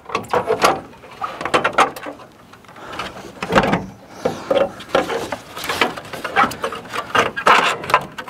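Plastic grille of a 2011 Chevy Silverado knocking and scraping against the truck's front end as it is pushed into place to line up its bottom mounting tabs: irregular clicks, knocks and rubs.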